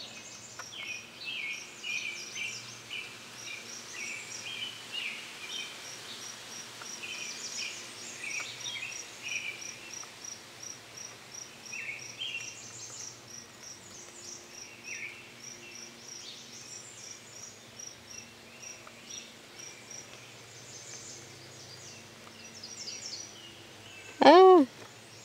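Insects and birds chirping: a steady, evenly spaced series of short high chirps runs throughout, with irregular bird chirps scattered over it.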